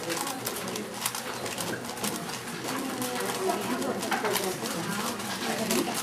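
Rapid, continuous plastic clicking of a 4x4 Rubik's-type cube being turned quickly by hand during a speedsolve.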